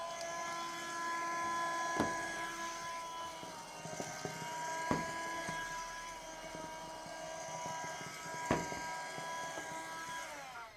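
Handheld cordless window vacuum running with a steady, high motor whine as its squeegee head is drawn over a glass board, with a few sharp knocks of the head against the glass.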